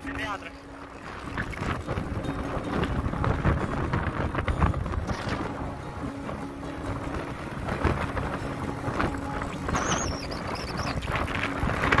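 Wind buffeting the microphone while riding a motor scooter, with the scooter's engine humming steadily underneath.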